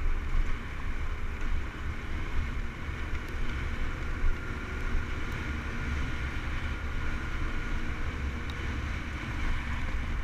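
Wind rushing over a helmet-mounted camera's microphone at riding speed, with a dirt bike's engine running steadily underneath.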